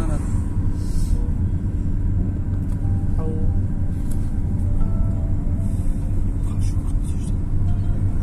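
Steady low rumble of a car driving along a road, heard from inside the moving car.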